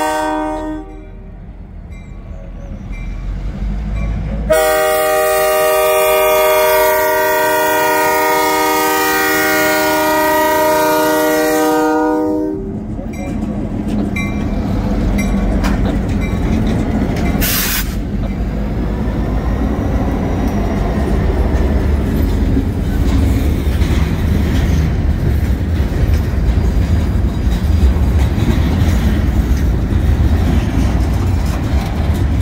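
Union Pacific diesel freight locomotive's multi-note air horn sounding at a road crossing: a blast that ends just after the start, then one long blast of about eight seconds. After the horn stops, the locomotives' diesel engines run past and the boxcars roll by, wheels clacking over the rails.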